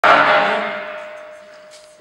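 Steel beam set down on a concrete floor: one loud metallic clang at the start that rings on and fades over about two seconds, a single ringing tone lasting longest.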